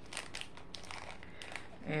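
A small earring package crinkling and clicking as it is turned over and worked in the fingers, in short irregular crackles.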